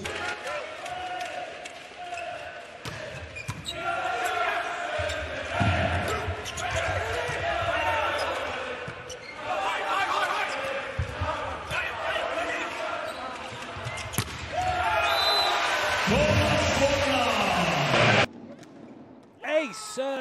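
Arena sound of a volleyball rally: the ball being struck and landing with several thuds over a noisy, shouting crowd. A short high whistle comes near the end, then the crowd gets louder and cuts off abruptly.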